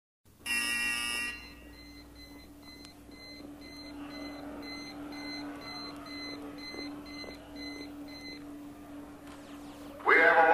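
A short harsh electronic buzzer, then a regular run of short high electronic beeps, about two a second, over a steady low hum; the beeping stops a little before the end.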